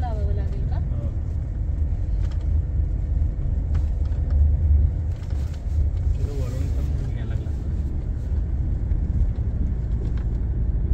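Steady low rumble of a car driving on a road, engine and tyre noise as heard inside the cabin.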